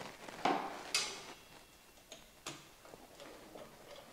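Small metal clicks and taps of a screw, nut and thin aluminium capacitor plates being handled and fitted together: three sharper clicks in the first two and a half seconds, then a couple of fainter ticks.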